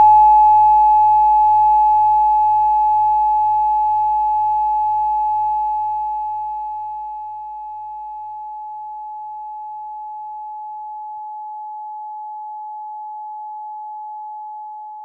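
A generated 852 Hz pure sine tone, a single steady pitch, played as a test signal for a spectrogram. It starts abruptly and loud, then eases down to a lower steady level about seven seconds in.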